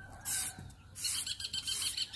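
Stiff push broom swept across a rough concrete slab in short scraping strokes. From about a second in, a bird chirps in a quick, regular high trill.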